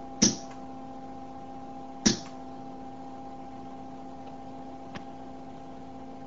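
A high-voltage spark-gap switch cracks sharply as a 4 kV capacitor discharges through it into a coil. Two short, loud cracks come about two seconds apart, over a steady electrical hum.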